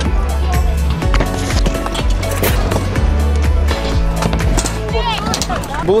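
Stunt scooter wheels rolling and clattering on a concrete ramp as the rider takes off and lands, over background music with a heavy bass line.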